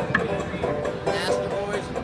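Electric bowed string instrument playing a held, singing melody line.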